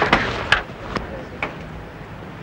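A few short, sharp knocks and clicks, roughly half a second apart, over a steady outdoor background hiss.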